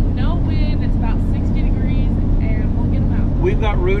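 Steady low engine and road drone heard inside the cab of an off-road recovery Jeep on the move, with voices talking over it.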